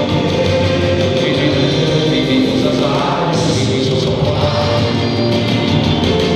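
Rock band playing live: electric and acoustic guitars, bass and drums, with singing.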